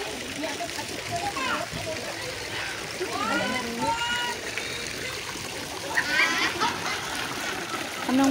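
Fountain jets splashing steadily into a tiled water channel, with people's voices talking intermittently over it.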